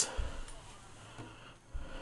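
Faint low rumbling handling noise as a hand-held camera is moved, with a quiet stretch in between; music from the radio comes in at the very end.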